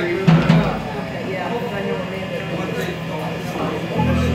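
Murmur of bar-crowd talk between songs, with two short, loud low thumps about half a second in, like a bass drum or bass note. The band comes in with a low bass note right at the end.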